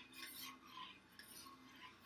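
A utensil stirring tea in a stainless steel stockpot, with faint scraping and light clinks against the pot.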